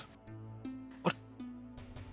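Background score music with sustained low notes that shift pitch twice, and a brief sharp sound about a second in.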